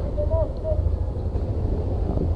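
Motor scooter engines idling with a steady low rumble, and a faint voice briefly in the first second.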